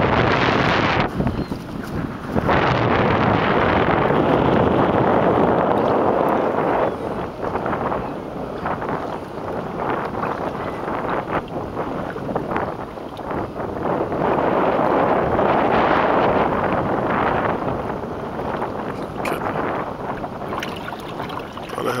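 Wind buffeting the microphone over choppy open water, with waves against the boat, swelling and easing in gusts and dropping off briefly about a second in.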